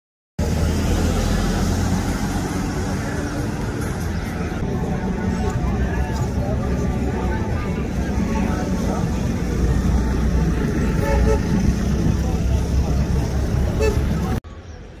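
Busy town-street ambience: motor traffic running, with people's voices mixed in, starting abruptly a moment in.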